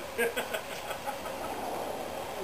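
A person's voice, brief and indistinct, during the first second, then a faint, even background.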